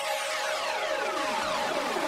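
Electronic radio jingle: a run of overlapping synthesizer sweeps, each gliding down in pitch.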